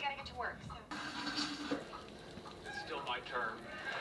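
A television programme playing in a small room, with people's voices talking in two short stretches, near the start and again about three seconds in.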